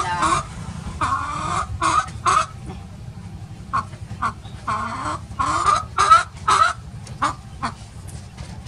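A naked-neck chicken clucking, about a dozen short calls at an uneven pace.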